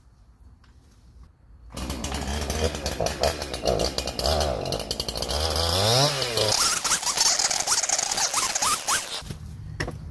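Gas chainsaw running hard and cutting, coming in abruptly about two seconds in, its pitch rising and falling as it is revved, then stopping shortly before the end.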